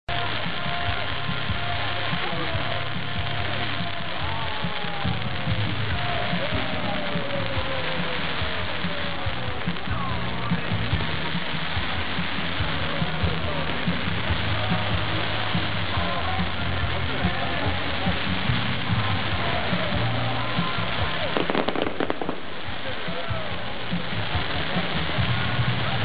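Fireworks display: a dense, continuous crackle of fountain and comet fireworks, with a cluster of sharper cracks late on. Crowd voices and music run underneath.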